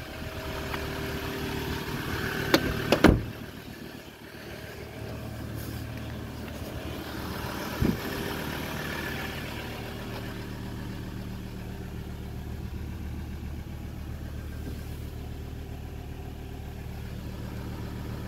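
The Ford Ranger's 3.2 TDCi five-cylinder diesel idling steadily, heard from the cabin with the door open. Two sharp knocks come about three seconds in, and another at about eight seconds.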